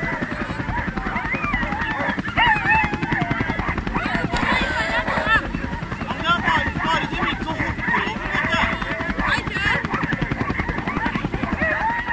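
Many harnessed sled dogs yelping, barking and howling at once in a dense, overlapping clamour: the excitement of teams waiting to be let go at a race start.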